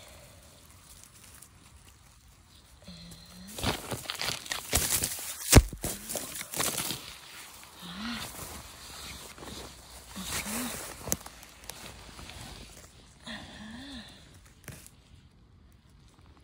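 Dry pine-needle litter rustling and crunching as the forest floor is searched for mushrooms, busiest in the middle, with one sharp snap about five and a half seconds in. A few short hums from a person come in between.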